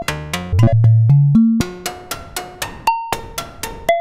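Harvestman Piston Honda Mk II wavetable oscillator played as a percussive sequence through a Make Noise Optomix low-pass gate: short plucked, pitched notes at about four a second. A run of louder deep bass notes comes in the first second and a half, and the tone changes as the wavetable sliders are moved.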